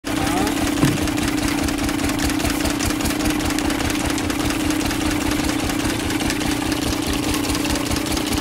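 An engine running steadily, a constant hum with an even low throb.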